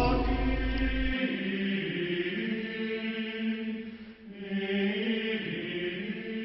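Choral chant, voices singing long held notes, with a brief break about four seconds in.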